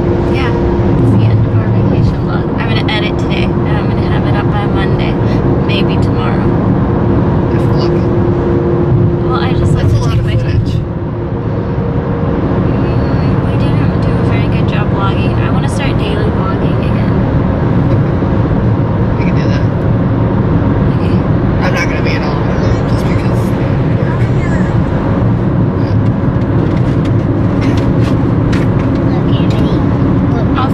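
Steady road and engine noise inside a moving car's cabin at highway speed, a continuous low rumble, with voices talking over it at times.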